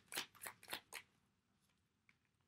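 A deck of tarot cards shuffled by hand: a quick run of short, crisp swishes, about five a second, that stops about a second in.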